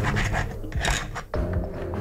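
Hacksaw blade rasping against a thin steel-wire pike leader stretched across a board, in about three short scraping strokes.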